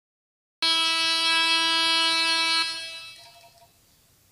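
A horn-like intro sound effect: one loud, steady, buzzy tone that cuts in suddenly about half a second in, holds for about two seconds, then fades away.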